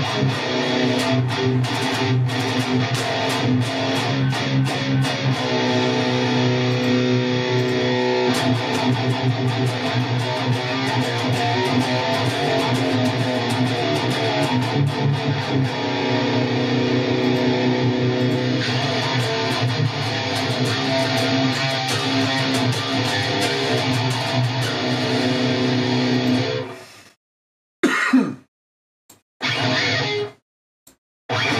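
Electric guitar played through the Fortin NTS Suite amp simulator with a saturated high-gain preset, giving heavily distorted metal riffing. The virtual cabinet microphone is switched between dynamic mic models as it plays. It stops abruptly about 27 seconds in, followed by a couple of short stabs near the end.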